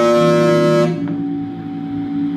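Tenor saxophone sounding a loud held note, rich in overtones, that breaks off about a second in; quieter held tones carry on after it.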